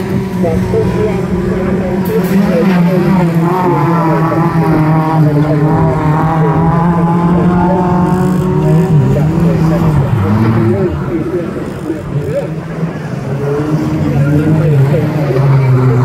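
Stock hatchback autograss cars running on the dirt oval, their engines at fairly steady revs with the pitch dipping and rising now and then. The sound gets louder near the end as a car comes close past.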